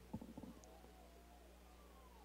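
Near silence: room tone with a low steady hum and a few faint clicks in the first half second.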